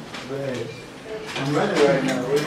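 Indistinct speech: brief talking that the transcript did not catch.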